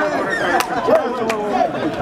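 Several voices talking over one another, with two short sharp knocks, a little over half a second apart, in the middle.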